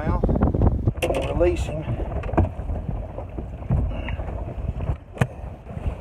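Wind buffeting the microphone with a steady low rumble, with brief low voices about a second in and a single sharp click about five seconds in.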